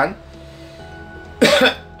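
A man coughs once, a short sharp cough about one and a half seconds in, over soft background music with held notes.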